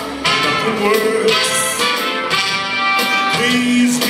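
A man singing into a handheld microphone over instrumental accompaniment, holding one long low note near the end.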